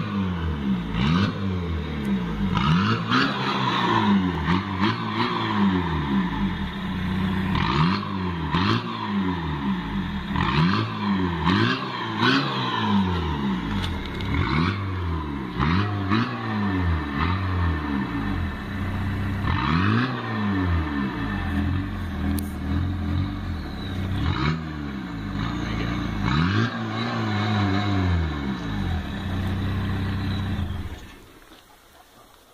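Peugeot 306 turbo-diesel engine revved over and over while parked, its pitch rising and falling back about once a second with a few short pauses, blowing out through an orange plastic drainpipe fitted over the exhaust.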